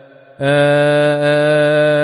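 Male deacon's solo voice chanting a psalm verse in Coptic liturgical chant. After a short pause for breath at the start, he holds one long, steady melismatic note.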